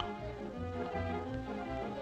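Background music: sustained notes held over a low bass line that steps from note to note.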